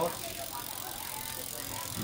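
Rear wheel and Shimano drivetrain of a Giant FCR 3300 bicycle running freely after a gear-shifting test, a steady whir with no sharp clicks.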